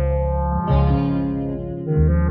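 Film background score: held notes over a heavy bass line that changes note every half second or so.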